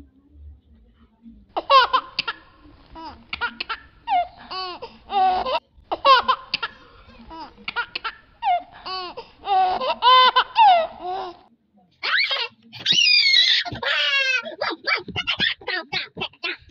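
High-pitched laughter in quick repeated bursts, breaking into higher, squealing laughs over the last few seconds.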